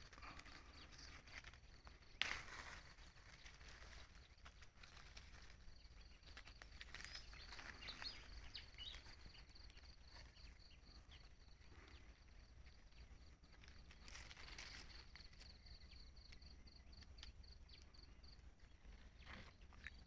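Near silence outdoors: a faint insect trilling in a fast, even pulse, with soft rustling of leaves and footsteps; a sharper rustle comes about two seconds in.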